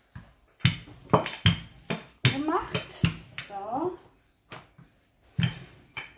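A woman's voice talking briefly, with several sharp knocks from hands working dough and handling a wooden rolling pin on a worktop.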